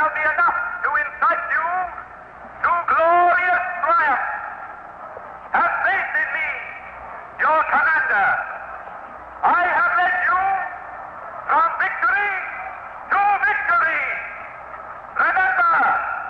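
A man's voice declaiming a speech in short, forceful phrases, each about one to two seconds long, with brief pauses between them.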